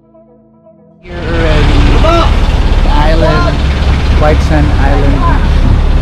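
Soft ambient music, then about a second in loud live sound takes over: a motorised outrigger boat's engine running with a steady low rumble, and people's voices over it.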